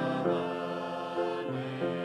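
A hymn played on an upright piano, with a small vocal group singing along in sustained notes.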